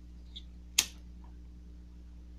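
A disposable Bic lighter struck once a little before halfway through: a single sharp click of the flint wheel. A steady low hum sounds underneath.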